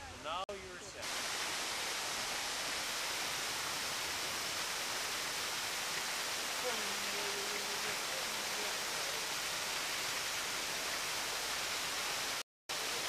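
Water pouring over a small weir: a steady, even rush that holds unchanged.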